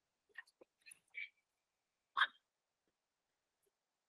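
Faint gulps and small mouth sounds of a man drinking from a water bottle, with one short, louder sound a little over two seconds in.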